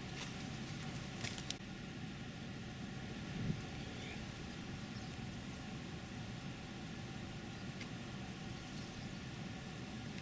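A motor vehicle's engine idling steadily as a low rumble, with a few faint clicks in the first second and a half.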